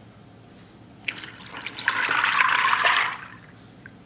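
Chicken broth poured from a glass measuring cup into a crock pot over dry tortellini, splashing for about two seconds starting about a second in.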